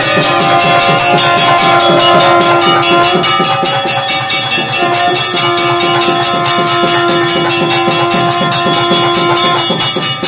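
Loud temple devotional music: fast, even percussion strokes, about seven a second, over long held notes, with ringing bells, accompanying the camphor-lamp offering.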